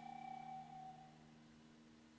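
A single high woodwind note, held and fading out about a second in, over faint low steady tones; near silence after it.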